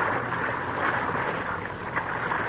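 Steady rushing of river water, a radio-drama sound effect, with no voices over it.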